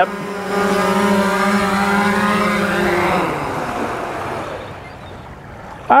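3DR Solo quadcopter's motors and propellers humming steadily as it descends to land. The hum then fades and stops about three to four seconds in, as the motors spin down on the ground.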